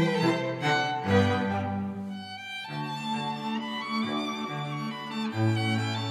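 Background instrumental music on bowed strings, violin and cello, playing slow sustained notes.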